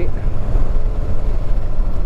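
Yamaha V-Star 950's V-twin engine running steadily under way, mixed with wind buffeting the microphone as a dense low rumble.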